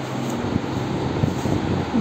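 Steady low mechanical hum with an even rushing noise under it, from a running machine.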